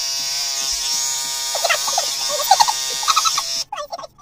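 Electric beard trimmer buzzing steadily in sped-up playback, with short high-pitched laughs over it. The buzz cuts off abruptly about three and a half seconds in.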